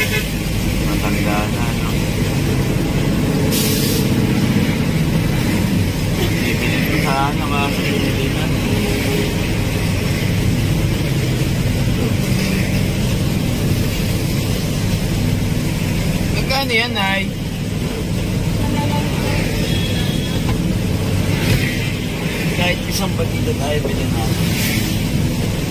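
Steady low rumble of idling and creeping road traffic and vehicle engines, with a short hiss about four seconds in and a few brief voices.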